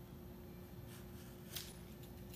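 Faint scraping of a Y-shaped vegetable peeler taking the skin off a mango, with one clearer stroke a little past halfway, over a steady faint hum.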